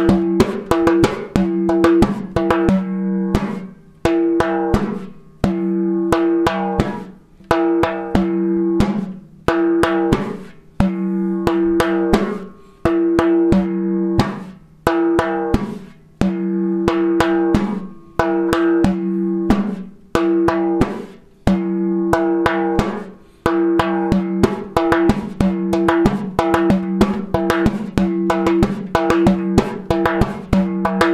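Frame drum played by hand in a repeating, stripped-down rhythm: long, ringing open bass tones alternate with quick clusters of sharp strokes, leaving space instead of continuous sixteenth notes, in the manner of a supporting drummer in an Arabic ensemble.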